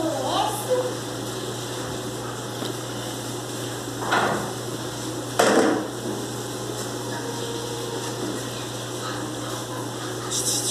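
Miniature pinscher puppies tussling over stuffed toys: two short scuffling noises about four and five and a half seconds in, over a steady hum.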